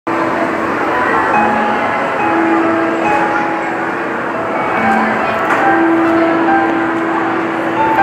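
Alto saxophone playing a slow song intro in long held notes, over a steady noisy background.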